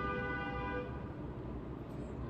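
A steady held tone with several overtones fades out about a second in, leaving a low rumble.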